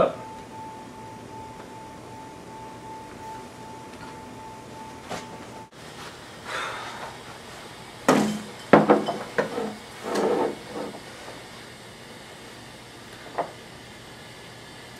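A beer glass and other small objects knocked and set down on a wooden table: a cluster of sharp knocks and clatters in the second half, and a single click near the end. Before them, a faint steady high whine runs until it cuts off about halfway through.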